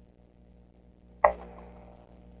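A single sharp knock about a second in, followed by a short ringing tail, over a faint steady hum.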